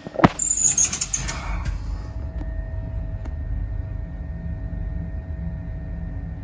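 Steady low rumble of a ferry's engines and machinery, with a faint steady hum over it. A few clicks and a brief high hiss come in the first second or two.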